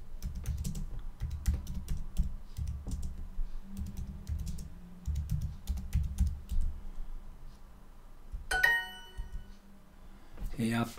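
Typing on a computer keyboard, a quick run of key clicks, then a short bright electronic chime about eight and a half seconds in: a language-learning app's correct-answer sound.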